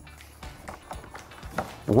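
Paint roller being worked in a black plastic paint tray of wet top coat, giving faint, irregular taps and clicks. Quiet background music plays underneath.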